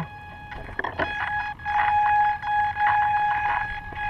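Radio-controlled model airplane's motor running at low throttle, a steady whine that swells and dips, with handling knocks against the airframe.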